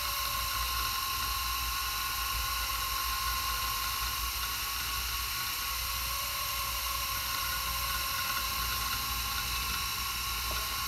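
Conner CP2045 2.5-inch SCSI hard drive spinning with a steady high whine while its heads seek, reading the system as the computer boots. Its rubber head-stop bumper has been repaired, so the heads move freely.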